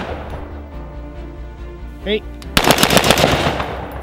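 BCM AR-15 carbine fired in a fast string of semi-automatic shots lasting about a second, starting a little past halfway through. The echo of the previous string is dying away at the start.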